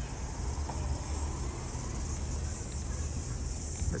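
Steady high-pitched insect drone, unbroken throughout, over a low rumble of outdoor background noise.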